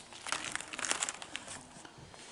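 Plastic sleeves of a spiral-bound photo album crinkling as a page is turned by hand: a run of irregular crackles that thins out after about a second and a half.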